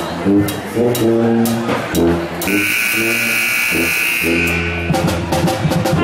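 Live pep band music: a tuba carries a rhythmic, bouncing bass line under brass and woodwinds, with regular drum hits. About two and a half seconds in, a bright, sustained high sound cuts in over the band for about two seconds.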